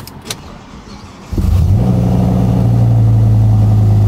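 Audi RS6 (C6) 5.0 V10 bi-turbo engine started from inside the cabin: a couple of clicks, then about a second in the engine catches with a sudden loud burst and settles into a steady idle.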